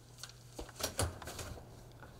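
A quick run of clicks and knocks with a heavier thump about a second in, over a steady low hum.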